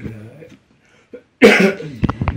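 A person coughs once, loudly, about a second and a half in, after a short low murmur.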